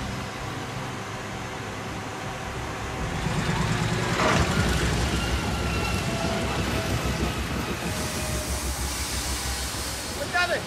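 Horizontal hydraulic drill rig running, a steady mechanical rumble with a hiss over it, growing louder about three seconds in as the drill keeps boring.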